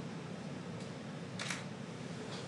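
Camera shutter clicks over a steady low room hum: a faint click just under a second in and a louder one about a second and a half in.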